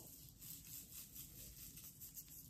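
Near silence, with a faint rustle of a Velcro hair roller being unwound from the hair.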